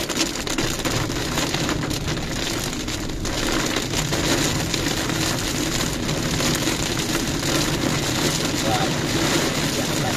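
Heavy rain falling on the roof and windscreen of a moving car, heard from inside the cabin as a steady dense hiss over the low noise of the tyres and engine.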